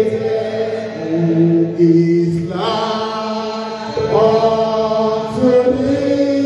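A man singing a slow church song into a handheld microphone, holding long notes that step to new pitches about halfway through and again near the end.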